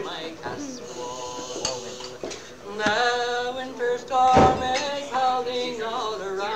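Unaccompanied male voice singing a slow traditional Irish lament in long, held notes, on a home cassette recording in a small room, with a brief bump about four and a half seconds in.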